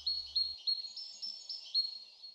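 A small songbird singing a run of short, high, thin notes, about three to four a second, alternating between two pitches.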